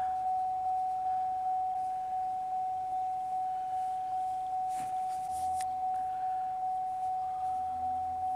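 Pontiac Aztek's dashboard warning chime repeating steadily, about three dings a second at one pitch, each fading quickly. A short rustle, like a page of the manual being turned, about five seconds in.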